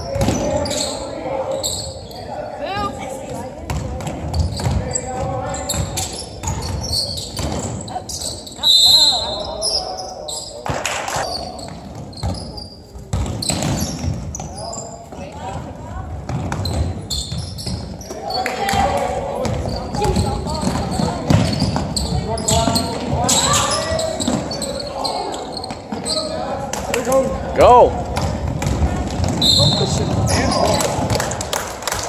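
Basketball bouncing on a hardwood gym floor during play, with short impacts scattered throughout and voices of players and spectators echoing in the hall.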